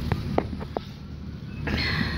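Steady low outdoor rumble, with a few light clicks in the first second and a brief hiss near the end.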